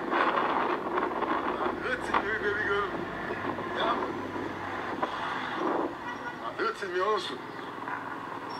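A man talking outdoors into a phone, over steady background noise.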